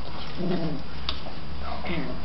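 Puppies at play, giving two short whimpering cries, one about half a second in and one near the end, with a light tap in between.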